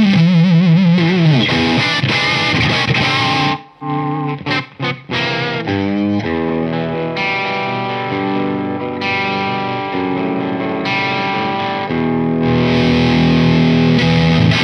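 Gibson Slash Les Paul electric guitar played through an overdriven amp: lead notes with wide vibrato and a falling bend, then a few short choppy stabs with brief gaps about four seconds in, then sustained ringing chords and notes.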